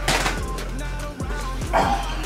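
Background music with a steady beat and a constant bass line.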